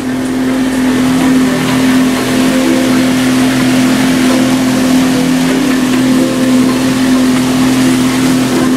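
A houseboat's motor running steadily under way, a constant hum, over the rushing of water churned up in the wake.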